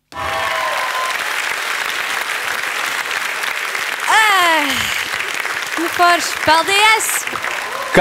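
Applause and cheering start abruptly at the end of a song and run steadily, with a falling whoop about four seconds in and a few voices calling out near the end.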